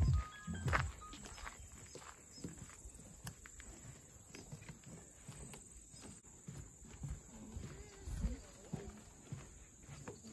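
Footsteps knocking on a wooden boardwalk, a string of short, uneven clicks and thuds, with faint voices near the end. Background music ends in the first second.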